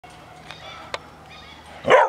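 Labrador Retriever puppies giving faint high whines in a kennel, with one sharp click about a second in. A loud laugh breaks in at the very end.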